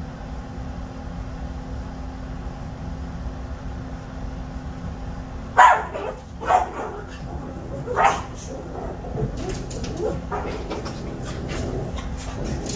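Small dog barking: three loud, sharp barks about a second apart starting near the middle, then scrabbling and smaller yips as it jumps about on a blanket, alert-barking at a person approaching outside. Before the barks there is only a steady low hum.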